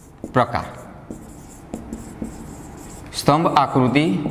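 Marker pen writing on a whiteboard in short strokes, with a few light taps, between brief bits of a man's speech.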